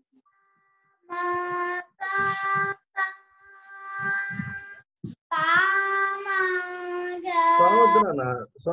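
Young children singing slow, long-held notes in a series of phrases, one note near the end sliding up before it holds. Heard over a video call, the sound drops to dead silence in the gaps between phrases.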